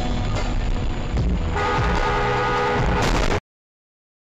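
Background music with road noise, then a car horn sounds in one long steady blast of nearly two seconds, starting about one and a half seconds in. All sound cuts off abruptly near the end.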